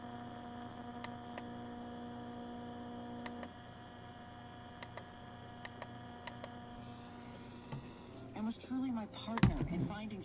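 FM radio of a 2Boom BT488 Bluetooth speaker being stepped through stations with its plus/minus buttons. A steady hum comes from the speaker and cuts off with a click about a third of the way in, and faint clicks follow. Near the end comes a brief snatch of voice and then a loud thump.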